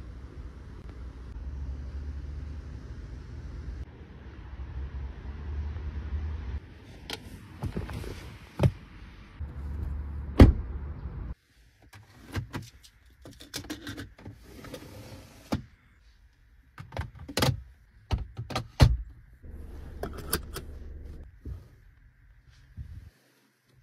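Car door and cabin handling in a Volvo V90 Cross Country: clicks and knocks, a heavy thump about halfway through, after which the outside background falls away, then a string of sharp clicks from the interior controls over a quiet cabin.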